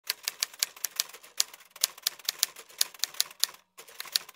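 Typing sound effect: rapid, uneven key clicks, about five or six a second, with a short pause about three and a half seconds in.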